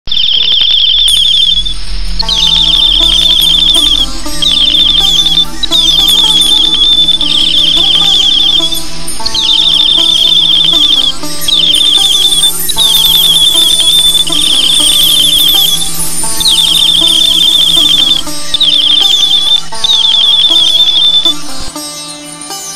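Background music with a steady low accompaniment, overlaid by about a dozen high, rapidly trilling birdsong phrases, each a second or two long, repeating with short gaps until just before the end.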